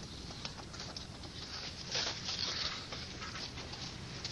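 Shovels being driven into packed snow to probe for a buried body, giving irregular soft crunches over a steady hiss, a little louder about two seconds in.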